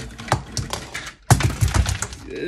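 Plastic toys and Lego pieces clattering and knocking together as they are handled and tossed: a run of sharp clicks, with a louder burst of clatter about a second and a half in.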